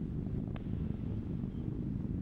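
Atlas V rocket's RD-180 first-stage engine in ascent, heard as a low, steady rumble.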